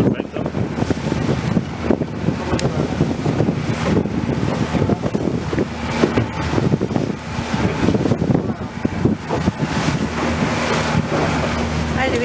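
Wind buffeting the microphone aboard a moving motorboat, with the engine's steady low hum underneath and water rushing past the hull.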